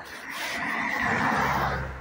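A car driving past: tyre and engine noise swelling to a peak about a second in, then fading.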